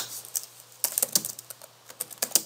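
Computer keyboard keystrokes clicking as code is typed: a couple of single key presses, then a quick run of several around the middle, and a few more near the end.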